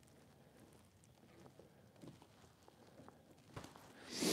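Near silence, with a few faint ticks from fishing tackle being handled by hand, about two seconds in and again shortly before the end.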